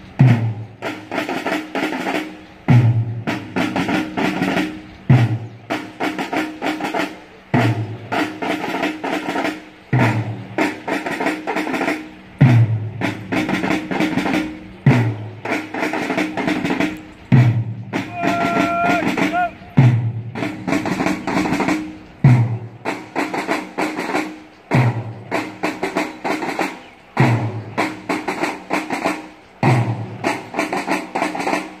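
Marching drums beating time for a parade march past: snare-drum rolls with a deep bass-drum stroke about every two and a half seconds. A single held tone sounds for about a second and a half a little past the middle.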